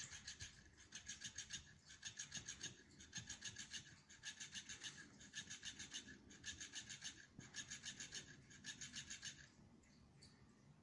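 Motorized flopping-fish cat toy, faint, its tail flapping with a rapid ticking of about seven beats a second. It goes in bursts of roughly a second with brief pauses between, and stops near the end.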